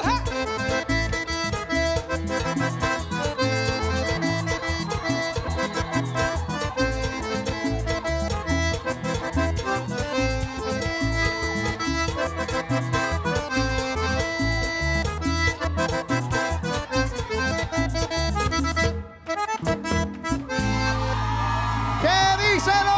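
Panamanian música típica on a button accordion: a fast, lively tune over a steady percussion and bass beat. It breaks off briefly about three seconds from the end, then closes on one long held chord.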